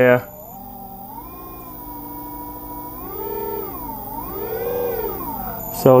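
Electrical whine of a three-phase motor driven by an IMO Jaguar CUB inverter, its pitch gliding with the output frequency as the speed potentiometer is turned: it rises about a second in, holds, then rises and falls twice.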